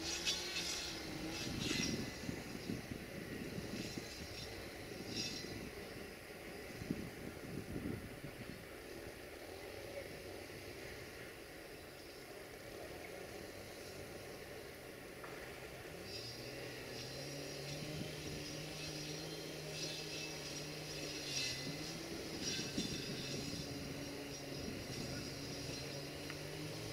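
Freight train of open wagons rolling past at a distance, its wheels clicking and knocking over the rail joints for the first several seconds, then quieter. From about 16 s in, a steady low hum builds up under it.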